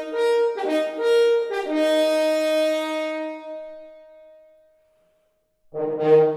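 French horns playing a hunting fanfare: a few short notes in two parts, then a held note that fades away. After about a second of silence the full horn ensemble comes back in near the end with a fuller, lower chord.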